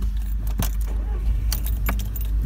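Car keys jangling with a few sharp clicks as the key is worked in the ignition, over a steady low rumble.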